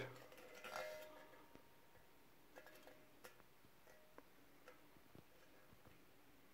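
Near silence: room tone with a few faint, scattered clicks and light taps from a titanium spade blade being handled.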